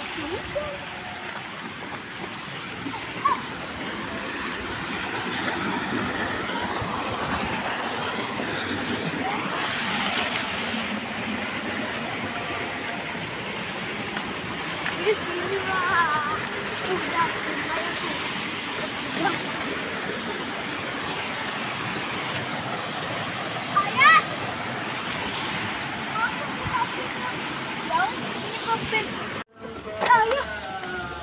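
Water rushing along a small rocky stream in a channel beside the path, a steady hiss.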